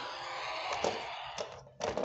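Handling noise from the hand-held camera as it is swung past the toy race track: a soft rustling hiss with a few light knocks, and a sharper knock just before the end.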